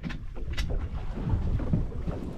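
Wind buffeting the microphone, a steady low rumble, with a couple of sharp clicks: one at the very start and one about half a second in.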